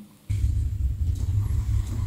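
A steady low rumble of room noise in a lecture hall starts about a third of a second in, with no voices, during a moment of silence.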